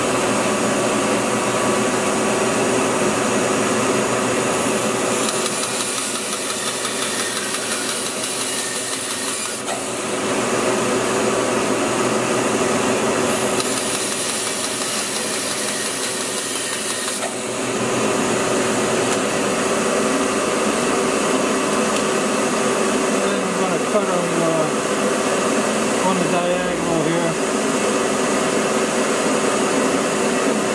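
Bandsaw running steadily while its blade crosscuts a wooden 2x4 into blocks. There are two cuts, from about 5 to 10 seconds and from about 13 to 17 seconds in, each adding a high hiss over the machine's steady note. The saw runs on after the cuts.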